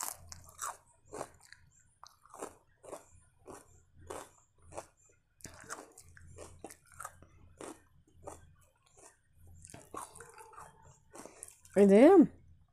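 Close-miked chewing of chapati and mutton keema curry: irregular soft wet clicks and smacks of the mouth, a few a second. A voice starts just before the end.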